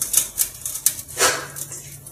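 A hand tool prying at a washing machine's plastic tub, with a few sharp clicks followed by a short scrape.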